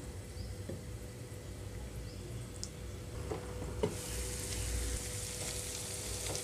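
Sliced ivy gourd frying in oil in a pan: a faint sizzle with a few light knocks, growing into a louder, hissing sizzle from about four seconds in as the pan is uncovered.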